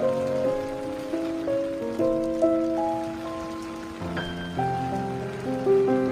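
Solo piano playing a slow, soft passage of held chords, with a new chord struck about four seconds in, over a steady sound of rain falling.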